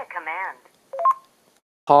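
Kyocera DuraTR feature phone's Nuance voice-command app speaking a short voice prompt through the phone's small speaker, followed about a second in by a quick two-note rising beep that signals it is listening for a command.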